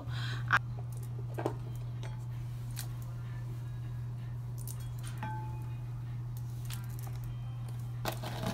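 A steady low hum, with faint scattered clicks and rustles as a wavy human-hair weave bundle is handled and brushed through with a paddle brush.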